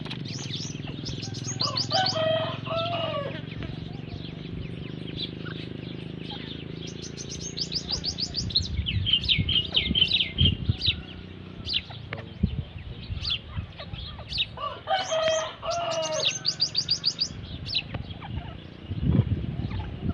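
Gray francolins calling: several bouts of fast, high, repeated chirps, and two longer, lower wavering calls, one a couple of seconds in and one past the middle. Low knocks come near the end.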